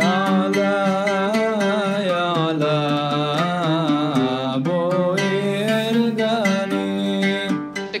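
A man singing a slow, ornamented melody, his voice wavering around each note, over his own plucked oud accompaniment.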